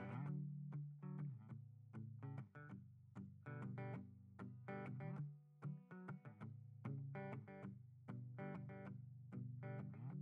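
Hollow-body electric guitar played solo: chords struck one after another, a few strokes a second, each left ringing, with a brief lull about halfway.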